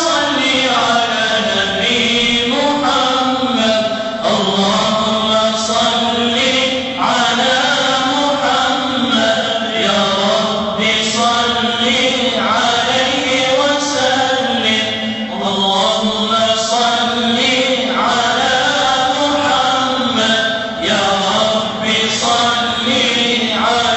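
A man chanting a mevlud unaccompanied: long, ornamented melodic phrases held and bent in pitch, broken by short pauses every few seconds.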